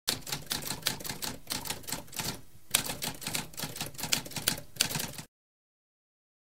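Typewriter keys typing in a fast, uneven run of clacks. There is a short pause about halfway, followed by one sharper strike, and the typing stops abruptly near the end.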